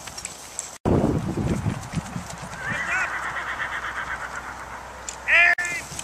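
Men yelling: one long held yell in the middle, then a short, loud yelp near the end.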